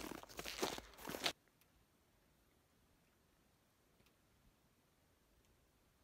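Footsteps crunching in snow, mixed with handling noise, for just over a second, then an abrupt drop to near silence with a couple of faint clicks.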